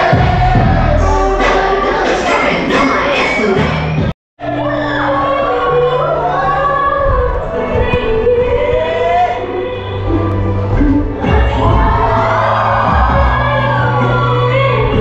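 Recorded dance music with a sung melody and steady bass, played over a hall's sound system for a stage dance. About four seconds in it cuts out abruptly for a moment and a different song picks up.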